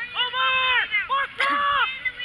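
A high-pitched voice shouting: a long, drawn-out call, then a short one, then another long call.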